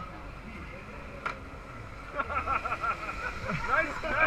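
Electric motors of small racing go-karts whining, the whine rising and falling in pitch in repeated swoops from about halfway in and growing louder toward the end, over a steady background noise with one sharp click early.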